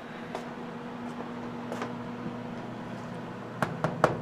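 Hitzer 710 anthracite coal stoker furnace running with a steady mechanical hum. A couple of sharper clicks come near the end.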